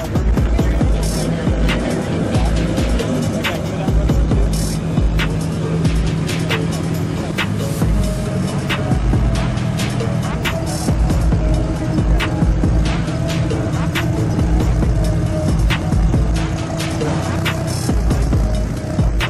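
Background music with a pulsing bass beat and steady percussion ticks.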